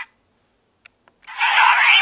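Kiramai Changer toy brace's small speaker playing an electronic sound effect with sweeping tones that rise and fall. It starts about a second and a half in, after a short silence broken by two faint clicks.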